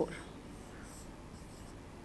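Marker pen drawing on a whiteboard: a few faint, brief high-pitched strokes as a hexagon is drawn.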